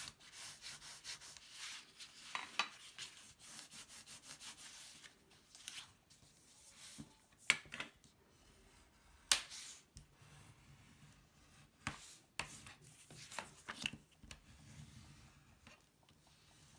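Bone folder rubbed along the scored edge of black cardstock to crease a flap, a steady dry scraping for the first few seconds, then lighter paper rubs and handling. A couple of sharp clicks come in the middle.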